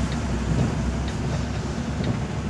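Steady low engine drone and road noise inside the cab of a moving truck.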